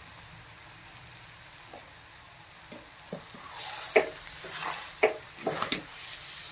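A metal spatula scraping and knocking against a steel kadhai as mashed-potato stuffing is mixed over the heat, with a light sizzle. It is quiet for the first couple of seconds, then sharp strokes come a second or less apart.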